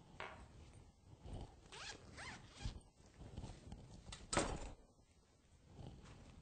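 Several short rasping strokes of something being handled close to the microphone, a few with quick rising sweeps, and one louder stroke a bit past four seconds in.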